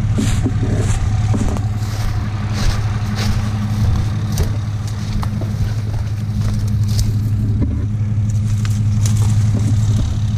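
Pickup truck engine idling steadily with a constant low hum. Scattered rustles and crunches of footsteps through dry brush and twigs sound on top.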